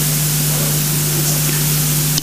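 Steady loud hiss with a low, unwavering electrical hum: the background noise of the meeting hall's microphone and sound system, heard while nobody is speaking.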